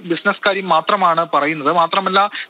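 Continuous speech: one voice talking without a pause.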